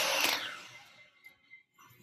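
A utility knife drawn along a straight edge, scoring brittle black walnut veneer: a steady scraping that stops about half a second in and dies away to near quiet.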